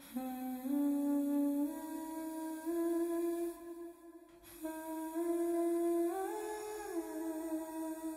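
A wordless hummed melody of slow, held notes climbing step by step, in two phrases with a short break in the middle; the second phrase rises and falls back near the end.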